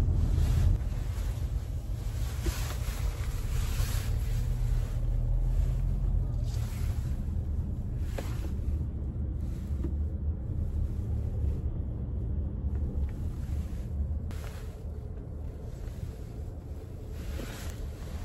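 Steady low rumble of road and engine noise inside a moving car's cabin, with a few swells of rushing noise.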